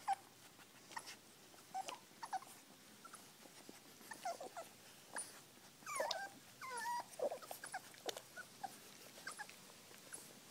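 Dalmatian puppies nursing, giving short squeaky whimpers, most of them bunched together in the middle, amid small scattered clicks.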